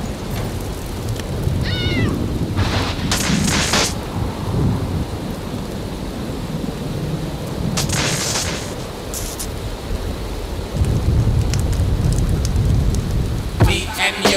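Thunderstorm sound effects: continuous low thunder and rain, with louder cracks of thunder about three and eight seconds in. A brief high wavering cry comes near two seconds in.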